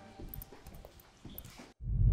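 Faint footsteps on a hard floor, a few light irregular taps, as background music fades out. The sound cuts off abruptly shortly before the end.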